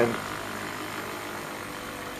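Homemade spiral-coil pulse motor running steadily: a neodymium ball rotor spinning on its shaft, driven by a Newman-type commutator that makes and breaks the 12-volt coil circuit.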